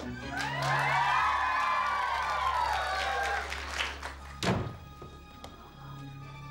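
A long, high-pitched scream that rises and then slides down over about three seconds, followed by a loud thud at about four and a half seconds, over background music.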